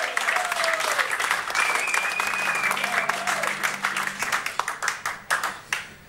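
Audience applauding in a small club, with some cheers rising over the clapping. The applause dies away near the end.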